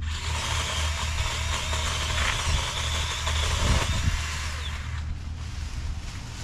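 DeWalt 20V battery pole saw running with a high motor-and-chain whine that starts abruptly, then cuts off about four seconds in and spins down with a short falling whine. A steady low rumble sits underneath.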